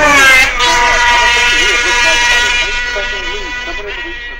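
A 50cc two-stroke racing motorcycle at high revs passing close by: its pitch drops sharply as it goes past, then holds a steady high note as it draws away. A public-address commentator's voice is faint underneath.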